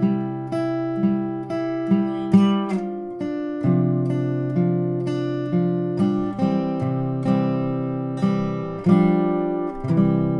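Steel-string acoustic guitar (a Faith cutaway) picked note by note about twice a second over a ringing C chord, playing a slow intro figure with the notes left to ring together.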